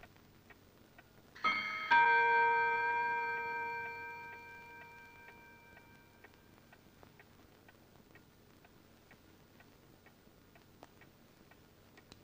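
Clock ticking faintly and steadily; one chime strikes a little under two seconds in and rings out, fading over about four seconds.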